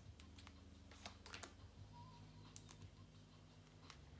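Faint, scattered clicks and light taps of tarot cards being handled and laid down, over a low steady hum.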